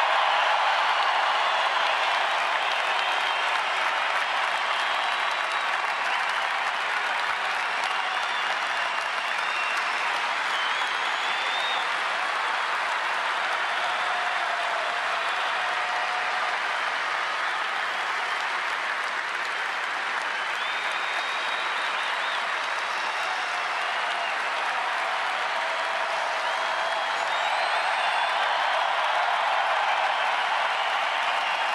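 Large ballpark crowd applauding steadily in a long, sustained ovation.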